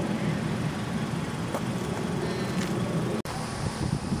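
Steady low outdoor rumble of background noise, such as passing traffic and wind on the microphone, with a brief dropout about three seconds in.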